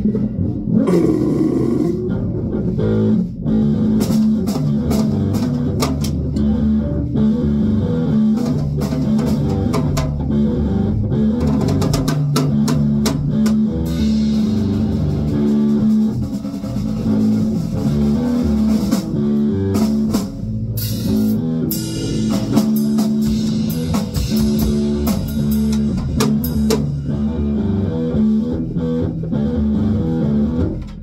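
Electric bass guitar and drum kit playing together in a band rehearsal: a moving bass line of low notes under steady drum and cymbal hits.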